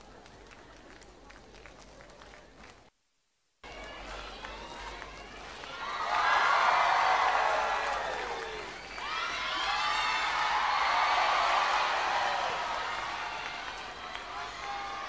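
Large concert audience cheering and shouting between songs. After a moment of dead silence about three seconds in, it swells in two loud waves.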